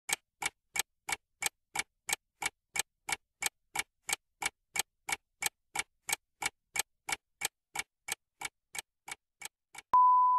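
Clock-ticking sound effect of a quiz countdown timer, about three even ticks a second, getting fainter near the end. A steady electronic beep sounds as the timer runs out.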